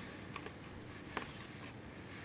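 Quiet room with a couple of faint, short scratchy clicks, about a third of a second in and again a little after a second.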